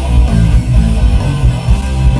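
Live rock band playing an instrumental passage, electric guitar to the fore over bass guitar, with no singing.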